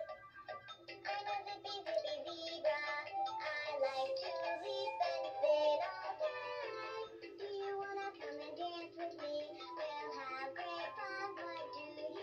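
VTech Lights and Stripes Zebra plush baby toy playing one of its sing-along songs, a synthesized voice singing over a bouncy children's tune, set off by pressing its glowing tummy button.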